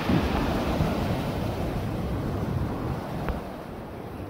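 Sea waves breaking and surging against the foot of a concrete sea wall, a loud wash that swells just after the start and slowly eases, with wind buffeting the microphone.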